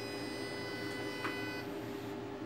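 Steady electrical hum from equipment in a small room, with faint high-pitched tones over it that cut off shortly before the end, and a single faint click a little past a second in.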